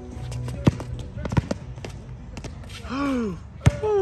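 Basketball dribbled hard on an outdoor court surface, a few sharp bounces. Near the end a voice gives two short cries that fall in pitch.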